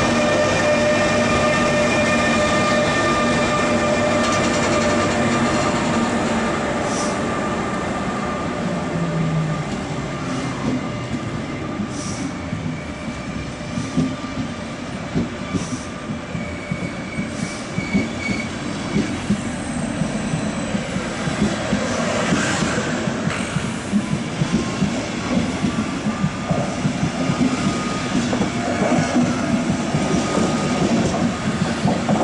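Electric-hauled passenger train departing past the platform. The ÖBB Taurus electric locomotive goes by with a steady electric whine that fades over the first several seconds. Then the coaches roll past with a rumble and wheels clicking over rail joints, louder near the end.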